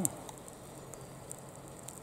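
A faint, steady low electrical hum, with a couple of faint ticks about halfway through and near the end.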